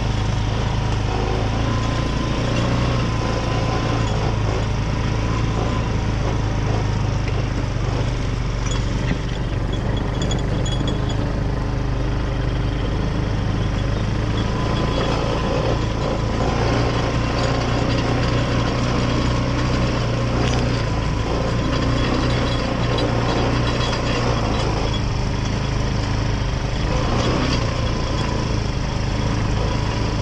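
ATV engine running steadily as the vehicle drives along, heard from on board.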